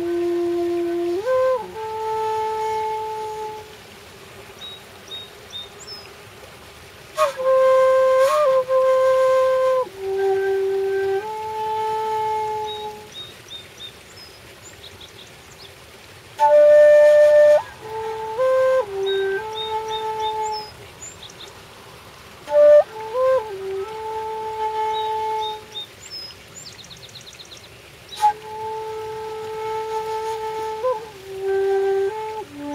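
Bamboo transverse flute, Erik the Flute Maker's 'Kung Fu' flute, playing a slow, relaxed melody. The notes are long and held, with quick grace-note flicks between them, and the phrases are separated by pauses of a few seconds.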